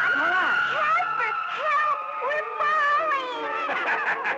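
Cartoon characters screaming as they fall from the sky: one long, high held cry that sinks slightly in pitch, with shorter cries under it.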